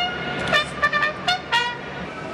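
Brass music: a trumpet fanfare in short, separate notes, several a second.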